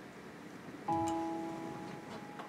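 Instrumental backing track of a pop song starting about a second in: a chord of several held notes comes in suddenly and slowly fades.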